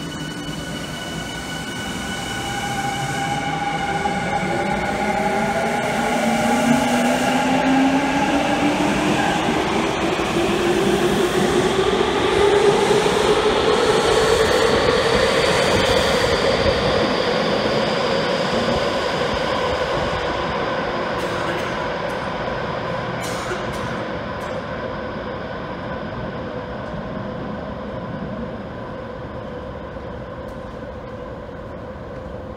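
Tokyu 5000 series electric train pulling out of the station. Its inverter and traction-motor whine climbs steadily in pitch as it accelerates, over the rumble of the wheels. It is loudest about halfway through, then fades as the train leaves.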